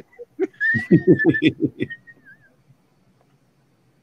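A burst of laughter in quick pulses, about six a second, with a thin high whistling tone over it that wavers and fades out about two and a half seconds in.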